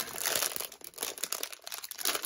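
Plastic packaging crinkling and rustling as it is handled, on and off, with a short lull after the middle.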